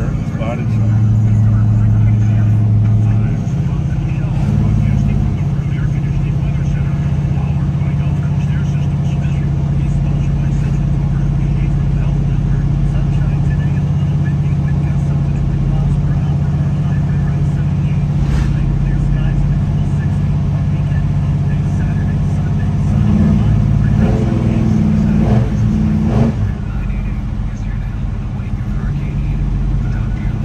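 The 1970 Chevelle SS 454's big-block V8 running on the road, heard from inside the cabin, a steady low drone that swells and changes pitch a couple of seconds in and again about three quarters of the way through. The engine is still coming up to temperature.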